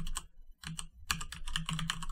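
Computer keyboard typing: a quick run of key clicks starting about half a second in.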